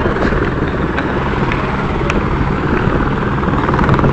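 Helicopter rotor and engine running close by: a loud, steady rumble that holds unchanged throughout.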